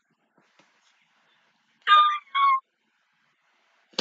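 Two short, high-pitched squeals of delight from a woman, back to back about two seconds in.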